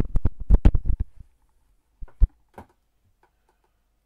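Handling and movement noise as a person gets up from a desk: a rapid run of loud knocks and thumps for about a second, then two sharp knocks about two seconds in, another just after, and a few faint clicks.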